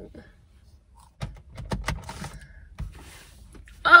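Several light clicks and taps of small objects being handled inside a car, then a woman's sudden loud exclamation, "Oh!", near the end.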